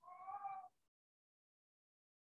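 A cat meowing once, faint and brief, for about half a second at the start, then near silence.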